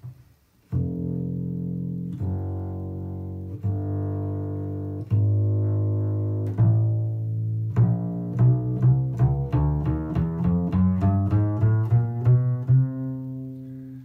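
Kolstein Busetto travel double bass played pizzicato: four long, ringing low notes, then a faster line of plucked notes from about eight seconds in, ending on a held note. The low notes have the full body and growl that the player finds missing from stick basses and other travel basses.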